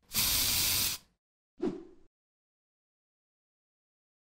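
Editing sound effects on a video's end card: a hiss lasting about a second, then a short hit about a second and a half in that dies away quickly.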